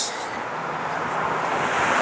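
A car passing on the road, a steady rush of tyre and road noise that grows louder toward the end.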